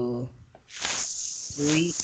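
A voice reading Quranic Arabic aloud slowly, drawing out long hissing 'sh' sounds between short voiced syllables.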